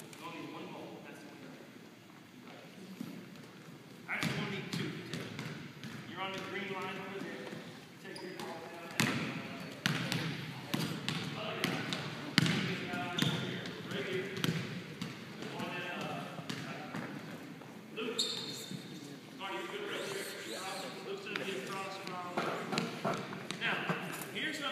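Basketballs bouncing on a hardwood gym floor, irregular thuds that start about four seconds in and go on throughout, with voices in between.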